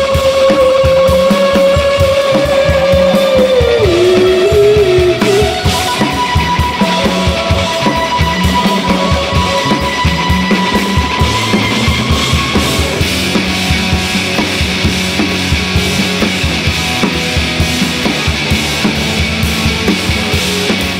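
Indie rock band playing live with electric guitars, bass guitar and a drum kit, in an instrumental passage with no vocals. A long held high note bends downward about four seconds in, over a steady drum beat.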